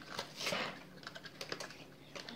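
A run of quick, irregular light clicks and taps, with a short rustle about half a second in.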